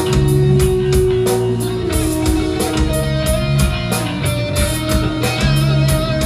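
A rock band playing live: electric guitars holding and changing notes over a drum kit that keeps a quick, steady beat.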